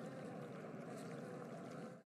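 Faint steady background ambience, a soft hiss with a faint wavering hum, that cuts off suddenly to silence at the end.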